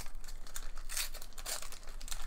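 Plastic wrapper of a trading-card pack being torn open and crinkled by hand: an irregular, crackly rustle.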